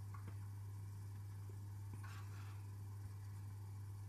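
A low steady hum, with a faint soft scrape about two seconds in as sticky bread dough slides in a plastic mixing bowl.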